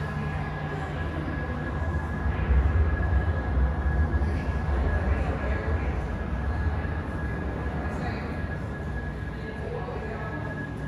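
Steady low rumble and hum of a large, crowded indoor room, with a thin steady whine above it and faint voices in the background. The rumble swells for a few seconds in the middle.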